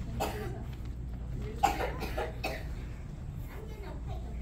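A person coughing: one short cough near the start, then a sharp cough a little before the middle followed by a few more. A low steady hum runs underneath.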